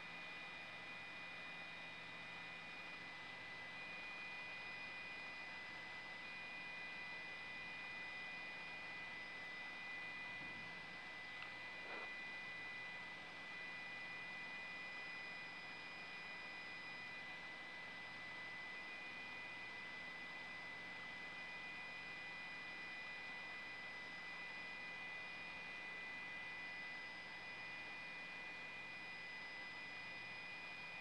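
Faint steady hiss with a few high, unchanging whining tones: the idle sound of an open live audio feed with no voice on it.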